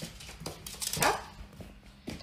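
Faint light clicks of a small dog's claws on a hardwood floor as it walks.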